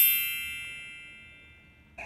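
Bright chime sound effect ringing out on a high, bell-like chord and fading away over about two seconds. It follows a quick upward sweep.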